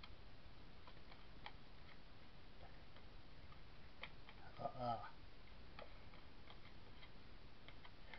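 Scissors snipping through grey board around a small disc: faint, irregular clicks, with a brief murmured voice about halfway through.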